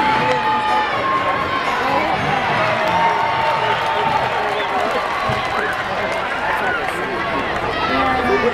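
Ballpark crowd noise: many voices talking and shouting over one another in the stands, with some held calls standing out.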